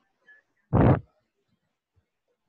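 A man's short, breathy vocal sound close to the microphone, about a second in.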